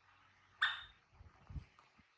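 A single short, high-pitched squeak from a baby macaque about half a second in, followed by a few soft low thumps.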